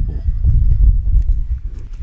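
Wind buffeting the camera microphone: an uneven low rumble with irregular thumps.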